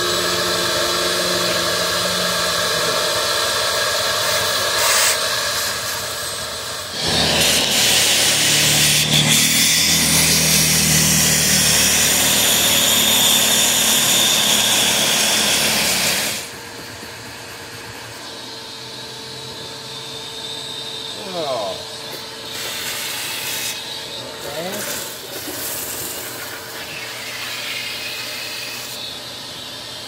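Shop-Vac shop vacuum running, its hose nozzle sucking dog hair and dirt out of a car's cargo-area carpet and seals. The suction noise gets louder about seven seconds in, then drops sharply to a lower level after about sixteen seconds.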